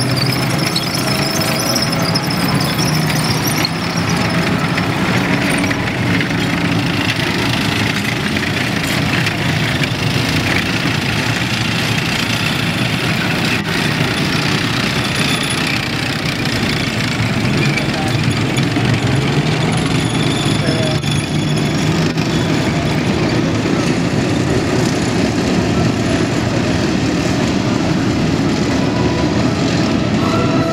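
Tracked armoured personnel carriers driving past at close range, their engines running and their tracks clattering over the dirt in a continuous loud mix.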